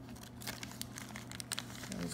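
Thin clear plastic packet crinkling softly in the hands as it is opened, an irregular scatter of small crackles.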